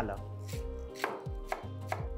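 Chef's knife chopping spring onion greens on a wooden cutting board: several crisp strikes about half a second apart.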